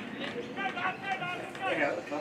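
People's voices talking and calling out, at a lower level than the speech around it, with no words clear enough to make out.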